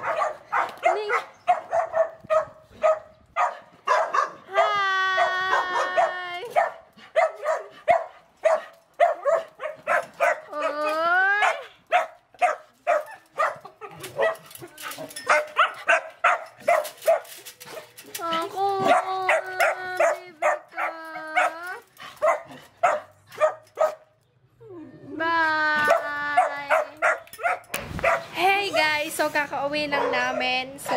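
A dog barking excitedly in rapid short yips, broken by several drawn-out whining cries lasting a second or two each.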